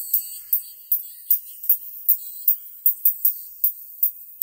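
Music played through a pair of bare paper-cone tweeters fed through a capacitor, so only the treble comes out. Thin, hissy cymbal and percussion strikes come at a steady beat, about two and a half a second, with almost nothing in the bass or midrange.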